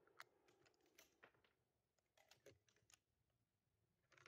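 Faint, scattered clicks and light knocks of handling, while the last of a rifle shot's echo dies away at the start.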